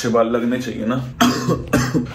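A young man's voice, then two short coughs in the second half.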